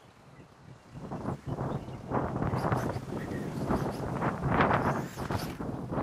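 Wind buffeting the microphone in irregular gusts, quiet for about a second and then swelling louder.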